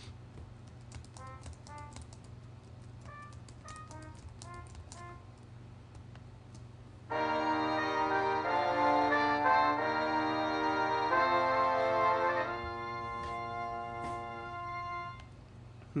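Computer clicks with short single-note blips as notes are entered in Finale notation software, then, about seven seconds in, Finale's MIDI playback of the brass parts: a run of loud sustained brass chords that change every second or so, ending in a softer held chord that stops near the end.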